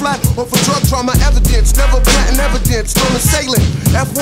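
Hip hop track with a rapper's voice over a beat of hard, regular drum hits; a long, deep bass note sounds from about a second in for roughly two seconds.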